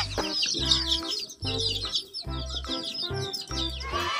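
Many young chicks peeping together, a dense stream of short, high, falling chirps. Background music with a low beat plays underneath.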